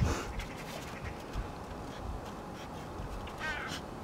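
Central Asian shepherd puppies wrestling in snow: soft scuffling with scattered low thumps. A short, high, squeaky call comes about three and a half seconds in.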